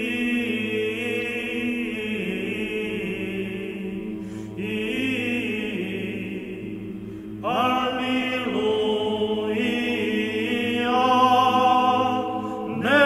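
Low, drawn-out vocal chanting; about seven and a half seconds in, higher sung voices enter with long held notes, growing louder near the end.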